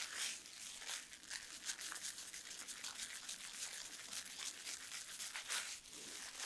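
Fingertips working a foamy cleanser lather through a wet beard in circular motions: a soft, close crackle and squish of popping bubbles and bristly hair, swelling louder about a quarter second in and again near the end.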